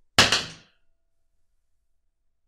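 A wooden-handled round hairbrush thrown down onto a table, landing with a single thunk that dies away within about half a second.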